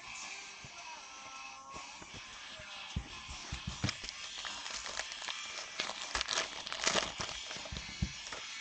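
Foil trading-card pack wrapper crinkling and tearing open in the hands, with sharp clicks and rustles of handling, busiest about six to seven seconds in. Faint background music underneath.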